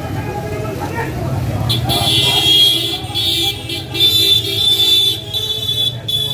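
Street crowd noise and voices, then from about two seconds in a loud, high-pitched horn sounding in long blasts with brief breaks.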